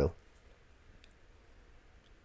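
Near silence: room tone, with a faint double click about a second in.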